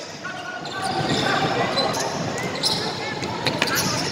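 Basketball being dribbled on a wooden gym floor during play, with voices in the background.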